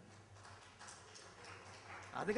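Near silence: room tone with a steady low hum and a few faint soft knocks.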